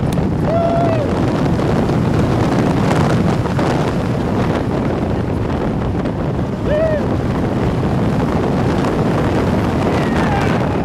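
Wind rushing over the microphone together with the rumble of a Bolliger & Mabillard steel hyper coaster train running along the track at speed. A short rider's cry rises over it about half a second in and again near seven seconds.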